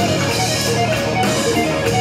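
Live blues-rock band playing loudly: an electric guitar runs through quick notes over bass guitar and a drum kit with cymbals.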